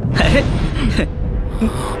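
A person gasping, with short breathy vocal sounds.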